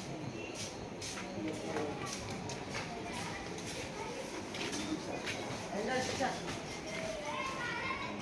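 Voices talking in the background, with scattered sharp clicks and taps throughout.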